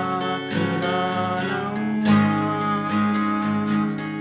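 Acoustic guitar with a capo on the fourth fret, strummed slowly in a steady rhythm of about three strums a second, with a chord change about two seconds in.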